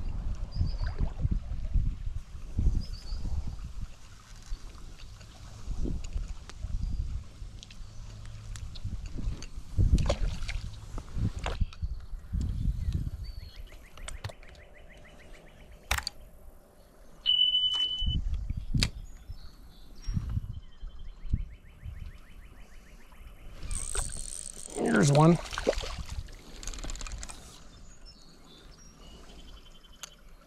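Shallow creek water sloshing and splashing around a wading angler, with irregular knocks and handling thumps as a caught fish is dealt with. There are stretches of fast, even ticking in the middle, a short steady beep about 17 seconds in, and a quick falling swoosh around 25 seconds.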